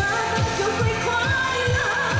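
Live Mandarin pop song: a woman singing into a microphone over amplified music with a steady kick-drum beat, about two beats a second.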